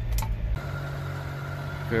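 1990 Subaru Sambar mini truck's engine heard inside the cab as it drives, a loud low rumble that cuts off abruptly about half a second in. It gives way to a quieter, steady engine hum with a faint steady whine above it, the truck idling.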